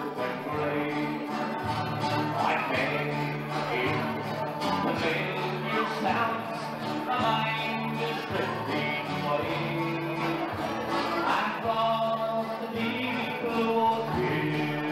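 Live band playing instrumental dance music: sustained chords over a bass line that steps from note to note.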